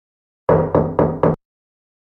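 Four quick knocks on a door, about four a second, starting about half a second in and stopping abruptly.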